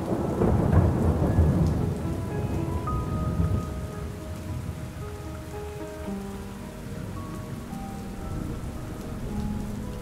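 Steady rain from a rainstorm ambience recording, with a rumble of thunder that dies away over the first few seconds. Soft, slow background music notes are held over the rain.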